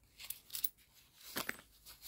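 Faint crinkling of plastic wrap and a few light clicks as a plastic-wrapped roll of coins is picked up and turned in the hand, the sharpest click about one and a half seconds in.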